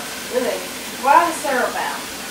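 A person's voice speaking briefly twice over a steady background hiss.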